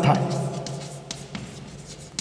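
Chalk writing on a blackboard: a run of short, light scratching strokes as a line of text is written.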